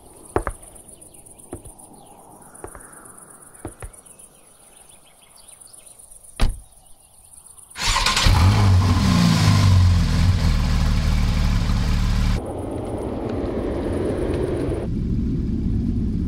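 A Porsche 911's flat-six engine starting about eight seconds in with a loud rev whose pitch falls away, then settling to a lower steady run about four seconds later. Before it, a quiet stretch with a steady high-pitched tone and a few sharp clicks, the loudest shortly before the engine starts.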